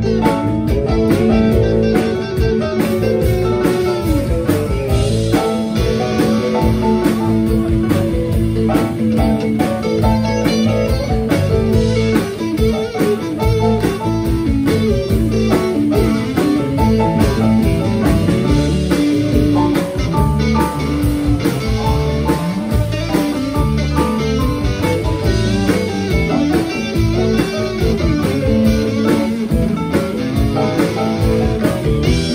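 Live blues band playing an instrumental passage, electric guitar to the fore over bass, drums and keyboard.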